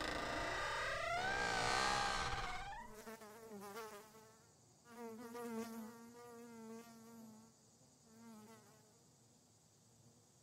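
An insect buzzing, its pitch wavering and gliding. It comes in several passes that fade out near the end.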